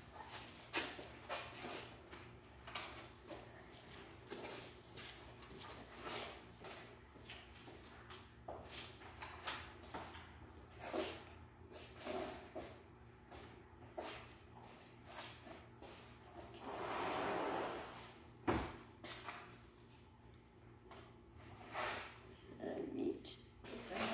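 Footsteps on a concrete floor and a towel being handled at a push mower's metal handle: scattered light taps and knocks, a longer rustle late on, and a sharp knock just after it.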